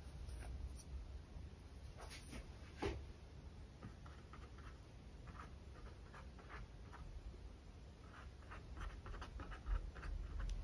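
Faint scratchy brushing of a small paintbrush working acrylic paint, first in the paint on a palette and then in short dabbing strokes on a stretched canvas. There is a light tap about three seconds in and another near the end.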